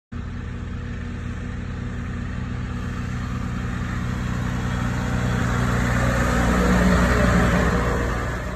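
John Deere tractor pulling a row-crop plot planter, its diesel engine running at a steady note and growing louder as it drives up and passes close by, loudest near the end.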